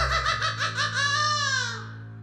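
A drawn-out laugh in quick pulses that slides down in pitch and trails off near the end, over a steady low hum.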